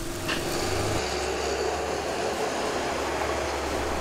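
Steady outdoor background noise with a low, even hum that grows stronger about a second in, and one light knock near the start.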